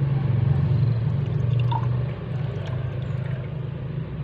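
Water dripping and splashing lightly as a wet hand handles small goldfish fry in a shallow tub of water, over a steady low hum that eases a little about two seconds in.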